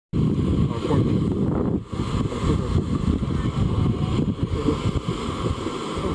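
Wind buffeting the microphone: a loud, uneven low rumble that briefly drops out just before two seconds in.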